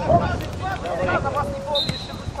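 Voices calling out across an outdoor football pitch, with wind rumbling on the microphone. A brief high, steady whistle-like tone starts near the end.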